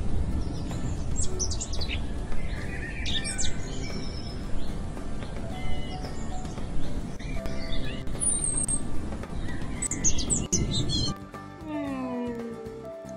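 Outdoor ambience of birds chirping and trilling over a steady low rushing background. It starts abruptly and cuts off about a second before the end.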